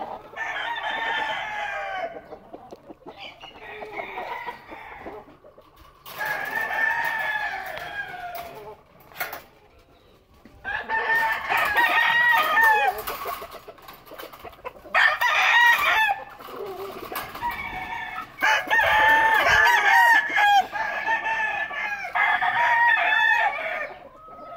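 Gamecock roosters crowing, one crow after another, about seven in all, each lasting a second or two.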